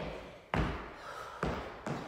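Thuds of a person's hands and feet landing on a wooden gym floor during burpee hops: one impact about half a second in, then two more close together near the end.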